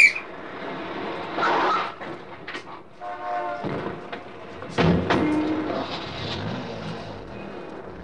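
Radio-drama sound effect of a motor car (a taxi) arriving: engine noise with a horn honk about three seconds in, on an old 1950s mono recording with hiss.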